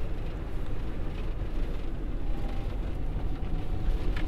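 Steady engine and road rumble inside a small van's cabin while it drives along.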